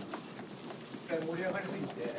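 Footsteps of a small group walking on a hard indoor floor: short shoe clicks at an uneven pace.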